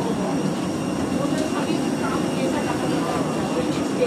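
Steady airport ambience: a constant low drone of machinery with indistinct people's voices in the background.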